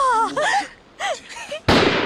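Short excited voices, then about 1.7 s in a sudden loud blast of a hand grenade exploding.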